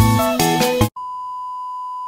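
Background music that stops abruptly just under a second in, followed by a steady, unchanging high-pitched beep: the test tone that goes with a 'Please Stand By' TV test card.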